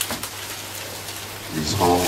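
Steady murmur of many voices praying aloud together in a church, with one voice coming in loudly on a held pitch about one and a half seconds in.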